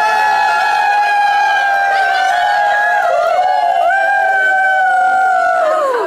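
Voices singing long, high held notes together, one note about three seconds long, then a short slide into a second long note that drops away at the end.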